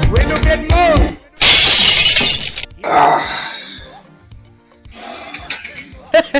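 A loud shattering crash like glass breaking, lasting just over a second, then a second, fainter crash that dies away.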